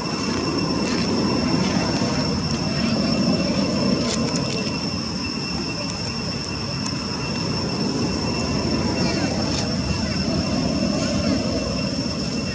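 Steady outdoor background noise: a continuous low rumble with a thin, steady high-pitched whine over it and a few faint clicks.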